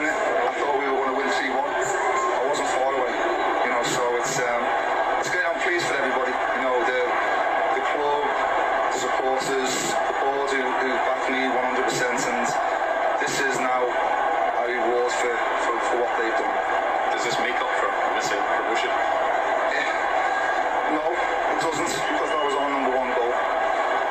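A man speaking in a televised interview, played back through the video, over steady background noise.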